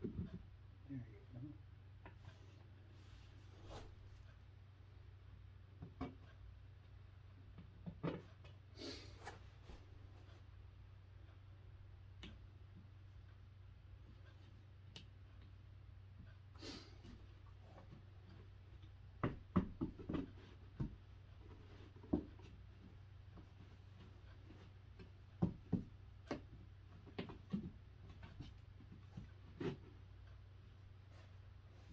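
Light, scattered knocks and clicks of particleboard cubby-organizer panels being handled and fitted together, coming in two short runs in the second half, over a low steady hum.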